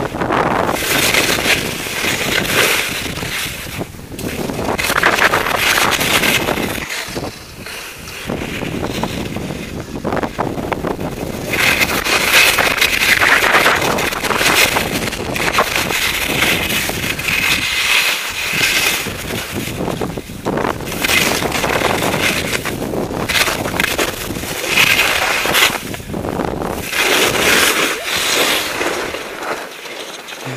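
Skis scraping and carving over firm snow through mogul turns, with wind buffeting the microphone; the hiss surges and fades every second or two as each turn is made.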